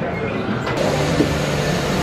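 Steady low rumble and hiss of the Pirates of the Caribbean boat ride's indoor ambience; just under a second in, the hiss turns fuller and brighter.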